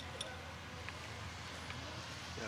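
Quiet outdoor background: a steady low hum with faint voices in the distance, and a couple of small clicks right at the start.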